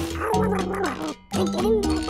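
A cartoon baby dragon making babbling vocal sounds, a quick string of short rising-and-falling calls, over background music.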